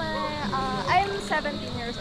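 A girl's high-pitched voice, soft and wavering, without clear words.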